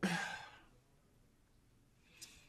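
A woman's short, breathy exhale or sigh, about half a second long, at the start.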